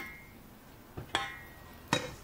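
Stainless steel cookware knocking. About a second in there is a ringing clink, and near the end a sharper knock, as the emptied pot and the wooden spatula meet the saucepan and the pot is set down on the ceramic hob.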